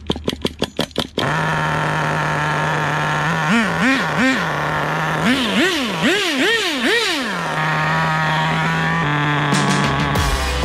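Small two-stroke nitro glow engine of an RC drift car catching about a second in after a run of rapid clicks, then idling. It is blipped on the throttle, three short rises and falls in pitch and then five larger ones, before settling back to idle.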